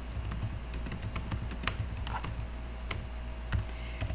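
Computer keyboard being typed on: an uneven run of keystroke clicks, about a dozen in four seconds.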